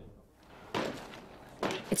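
A single thud about three-quarters of a second in, with a shorter scuff just before a voice starts near the end.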